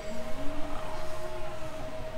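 A steady single-pitched hum over a low, uneven rumble.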